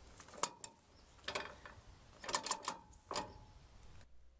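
A few sharp metallic clicks and clinks, scattered and irregular, some with a brief ring: hand tools and steel parts being handled on a boat trailer.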